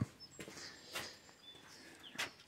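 Faint outdoor quiet with a few brief, high bird chirps and a soft knock about a second in.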